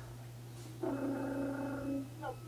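A person's voice holding one steady, hum-like note for about a second, starting a little under a second in, over a low steady electrical hum.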